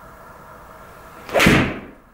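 PXG 0311XF iron striking a golf ball off a hitting mat: one sharp, loud strike about 1.4 seconds in that dies away quickly. The golfer judges it a decent strike.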